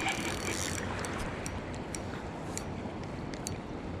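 Spinning reel being cranked against a heavy hooked salmon, its mechanism giving scattered sharp clicks, over the steady rush of river water.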